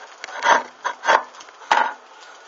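Burning bra fabric crackling and sputtering in about four irregular bursts as the flames eat along the cups.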